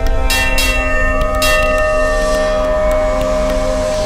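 Brass temple bell struck three times in the first second and a half, its tones ringing on steadily over a deep low hum.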